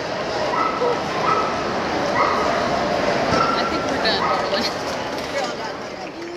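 Dogs giving several short, high yips and whines over a steady din of crowd chatter at a dog show.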